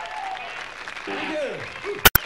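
Rock-concert audience applauding and cheering, with a few gliding, falling pitched sounds over the crowd noise.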